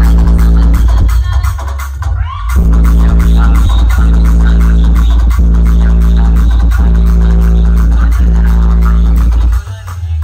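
Electronic dance music played very loud through a large DJ speaker rig, dominated by heavy steady bass with a repeating held chord. There is a short break with a rising sweep about two seconds in, and the bass drops out near the end.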